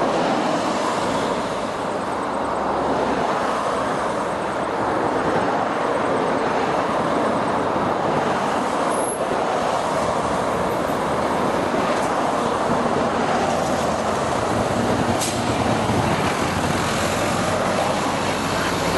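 Steady road traffic noise as cars and a truck pass on a highway, a continuous rushing sound with no pauses.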